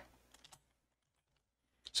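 A few faint computer keyboard keystrokes in quick succession, about half a second in.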